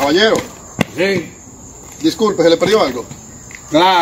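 A man's voice making several short wordless vocal sounds that rise and fall in pitch, with a sharp click about a second in. Crickets chirp steadily in the background.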